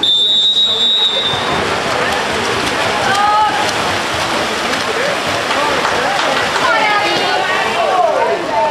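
Referee's whistle, one steady blast of about a second and a half, signalling the restart of play. Shouting voices and splashing water follow.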